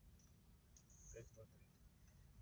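Near silence inside a car stopped in traffic: a faint low cabin hum, with a brief faint murmur of a voice just past a second in.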